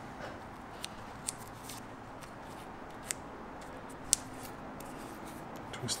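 Faint rustle of hands wrapping black tape around an arrow shaft, with four sharp little clicks spread through it.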